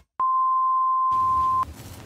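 A steady electronic beep at a single pitch, starting with a click just after the start, holding for about a second and a half and cutting off abruptly. A faint static hiss of a video-glitch transition comes in under it and runs on after it.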